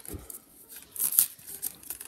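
Packaging being handled and opened: short crinkling, tearing rustles of paper or plastic, loudest about a second in.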